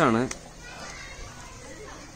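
The last spoken word of a phrase ends in the first moment. After it come faint background voices of children playing.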